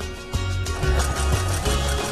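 Electric sewing machine stitching cotton fabric in short stop-start runs as the seam is steered around a curve, starting up again after a brief pause just after the start. Background music plays throughout.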